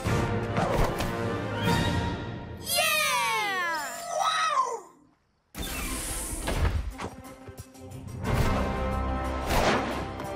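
Cartoon soundtrack music with sound effects, including a cluster of falling, gliding animal-like cries about three to four seconds in. The sound cuts out completely for about half a second a little after five seconds, then the music resumes.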